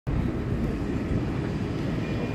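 Steady noise of aircraft engines running on an airport apron.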